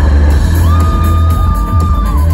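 Pop-rock band playing live and loud in a large arena hall, heavy on the bass, with a long high note held from about half a second in.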